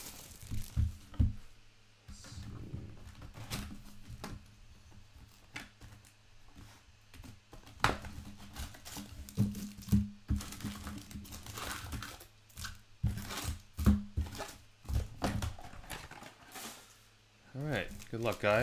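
Handling and opening a Topps Chrome baseball hobby box: plastic wrapping and foil card packs crinkling and tearing, with cardboard flaps rustling and many scattered sharp clicks and taps as the packs are pulled out and stacked.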